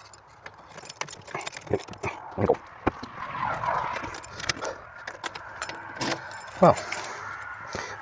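A bunch of keys on a keyring jangling and clicking against a door lock as a key is worked in it, with a string of sharp clicks.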